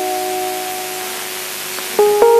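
A held musical chord, a few steady notes sustained and slowly fading over a steady hiss, with a new chord coming in right at the end.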